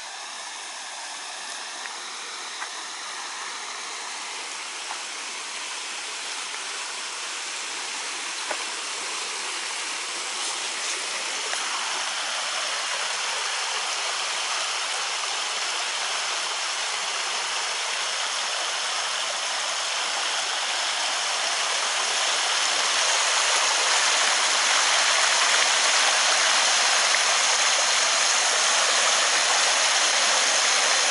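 Steady rushing of running water, growing steadily louder as it is approached.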